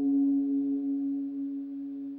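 Model D analogue synthesizer playing a bell patch: one bell-like note, its resonant filter frequency-modulated by the LFO, ringing on and slowly fading. A Walrus Audio Julia chorus pedal adds a slight warble, and reverb and delay are added.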